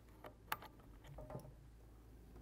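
A few faint clicks and small knocks from an IEC power cable's plug being pushed into the valve amplifier's rear mains socket, the sharpest about half a second in.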